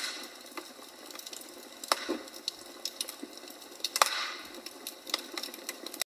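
Logs burning in a fireplace, crackling with irregular pops and snaps over a soft steady hiss. The loudest pops come about two seconds and four seconds in.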